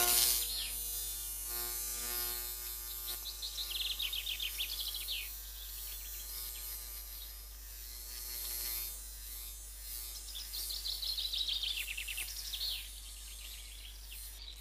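Cartoon soundtrack: a steady buzzing hum, the sound of a flying bee, that fades out after about six seconds. Two runs of high, quickly repeated falling chirps come in, about four seconds in and again about ten seconds in.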